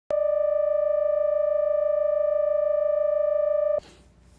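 Steady electronic reference tone of the colour-bars-and-tone leader at the head of a videotape, one unchanging pitch held without a break and cutting off suddenly near the end.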